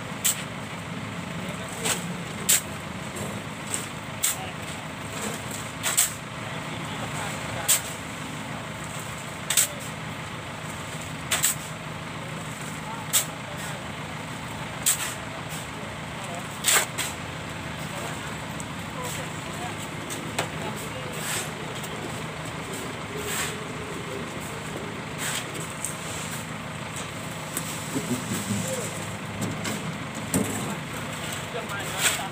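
Shovels scooping sand and tipping it into steel wheelbarrows, a sharp scrape or clatter about every two seconds, thinning out in the second half. A steady low hum runs underneath.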